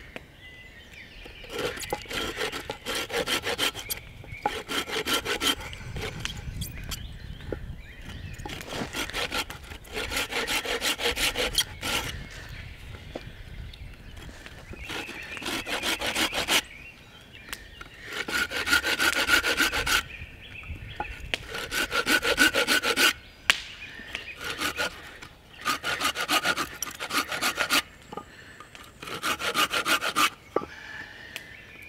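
A Bahco Laplander folding saw cutting a stop cut around a sweet chestnut log, in bursts of quick back-and-forth strokes with short pauses between them.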